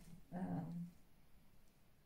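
A woman's drawn-out hesitation sound, 'äh', held on one pitch for about half a second, then quiet room tone.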